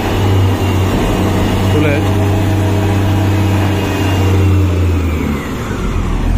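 Reach stacker's diesel engine running with a steady low hum that eases off about five seconds in, with a faint whine falling in pitch over the last few seconds.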